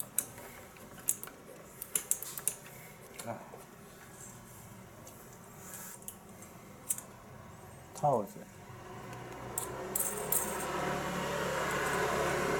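Scattered light clicks and ticks from hands handling small parts and wiring in a scooter's open front panel, with a short voice sound about eight seconds in. From about ten seconds a steady low hum with a hiss comes in and grows louder.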